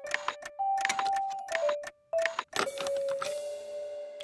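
Cartoon sound effects of small metal clock parts clicking and clinking as a gear is pulled out of a clockwork mechanism, with a short rattle past the middle. Background music holds long notes underneath.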